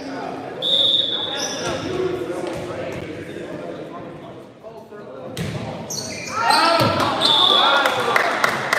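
A referee's whistle blows two short, steady blasts, about a second in and again near the end, over players' and spectators' voices echoing in a gymnasium. In the last two seconds the voices get louder, with several sharp knocks.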